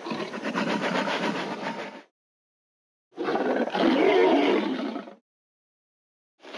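Indoraptor dinosaur roar sound effect, heard twice: two growling roars of about two seconds each, a second of silence between them, the second roar louder.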